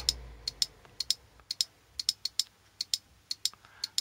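Relay of a homemade relay-switched pulse charger (battery desulfator) clicking at irregular intervals, about fifteen sharp clicks in quick, uneven succession. Each click is the relay dumping a capacitor's stored charge into the battery as a pulse, and the random spacing matches the random pulse timing of this test circuit.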